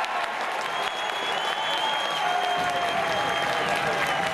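A football crowd clapping and cheering just after a penalty is scored, with a few voices calling out above the noise.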